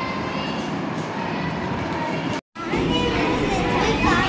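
Noisy classroom background with faint children's voices and chatter under a steady hiss. The sound cuts out for an instant about two and a half seconds in, then returns a little louder with more chatter.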